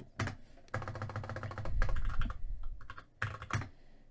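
Typing on a computer keyboard: a quick run of keystrokes, then a few separate key presses in the second half.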